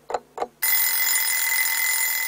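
An alarm clock ringing, steady and loud, starting about half a second in, after a few clock ticks.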